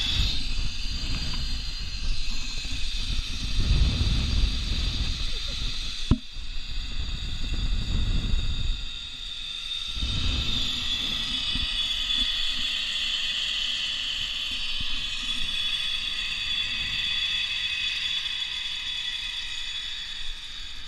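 Zipline trolley pulleys running along the steel cable with a steady high whine, over gusty wind buffeting the camera's microphone; a single sharp click about six seconds in.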